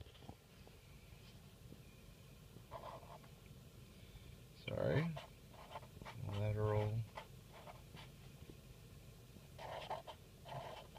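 Sharpie felt-tip marker writing on paper, faint strokes as a word is lettered. A low hummed voice sound about six seconds in, held under a second, is the loudest thing, with a short vocal sound just before it.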